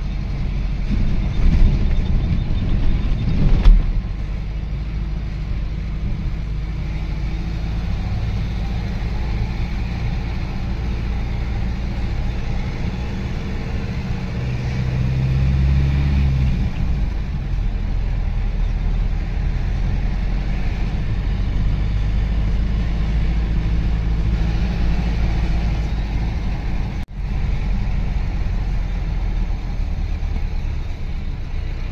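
Steady low engine and road rumble from inside a moving vehicle's cabin, louder for the first few seconds while passing a line of trucks. The engine note swells about halfway through, and the sound cuts out briefly near the end.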